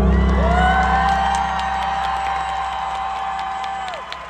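A live band's final chord lands with a heavy bass hit and rings out, fading, while a single high voice holds one long note over it and bends down at the end. The crowd cheers and whoops underneath.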